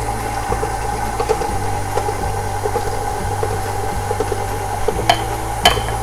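KitchenAid tilt-head stand mixer running steadily, its motor giving a constant whine over a low hum as flour is poured into the bowl. A few light knocks come near the end.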